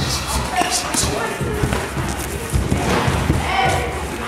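Kickboxing sparring: repeated thuds of punches and kicks landing on boxing gloves and bodies, echoing in a sports hall, with voices in the background.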